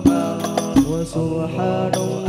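Al-banjari group singing sholawat together over struck frame drums (terbang), several sharp drum strokes cutting through the sung line.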